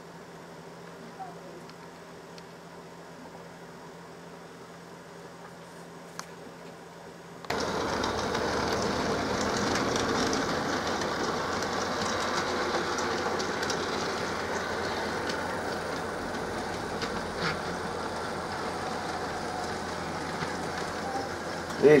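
00 gauge model A4 steam locomotive with a ringfield motor running on its track and hauling coaches, its motor and wheels making a steady running noise. For the first third only a faint steady hum is heard; then the running noise comes in suddenly much louder and holds, easing slightly near the end.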